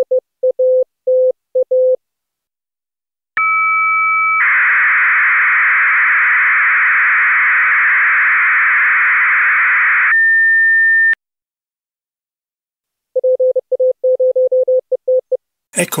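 Amateur radio digital transmission: Morse code beeps at a steady pitch, then about a second of two steady tones, then about six seconds of an 8PSK1000 data burst, a dense hiss centred near 1800 Hz, ending in a single steady tone for about a second. After a short gap, more Morse code beeps come near the end.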